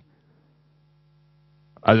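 Faint, steady electrical hum with a low pitch. A man's voice starts speaking near the end.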